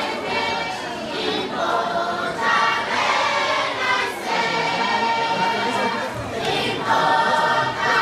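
A congregation singing together as a choir, a hymn-like song in many voices.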